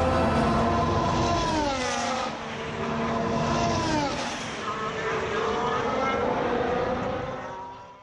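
Formula 1 car's 1.6-litre turbocharged V6 hybrid engine running hard, its pitch falling twice in quick glides, about two and four seconds in, then holding steady before fading out at the end.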